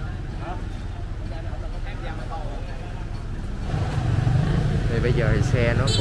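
Street traffic: motorbike engines and a small truck running close by, with a steady low rumble that swells louder about two-thirds of the way through as vehicles pass near. Chatter of people can be heard over it.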